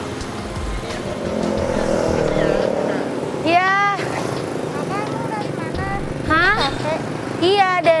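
Motorcycle passing close by, its engine sound swelling and then fading over the first three seconds.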